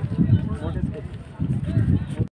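Indistinct voices of people talking close to the phone's microphone.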